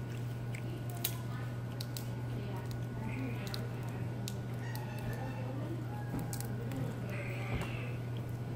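Dining-room background: a steady low hum under the faint murmur of other diners' voices, with a few small sharp clicks scattered through it.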